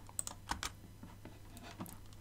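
A computer keyboard: a handful of separate, light key clicks, keypresses paging on through command-line output.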